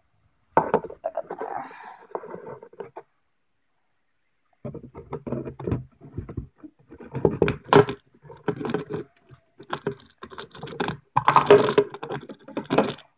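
Irregular knocks, clatters and rustles of objects being handled close to the microphone, cutting out for about a second and a half around three seconds in before resuming as a quick run of knocks.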